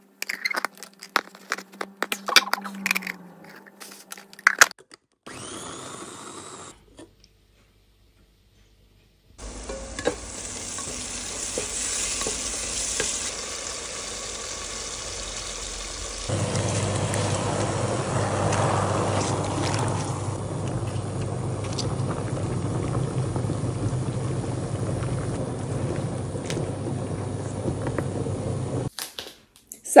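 Water running steadily into a stainless steel pot of freshly picked wild garlic leaves as they are washed by hand, the sound turning fuller and lower about sixteen seconds in. It is preceded by a few seconds of scattered clicks and knocks.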